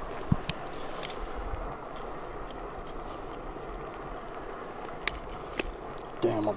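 Steady hiss of rain, with a few small sharp clicks from pliers and lure hooks as a jerkbait's hooks are worked out of a largemouth bass's mouth: three in the first second, two near the end.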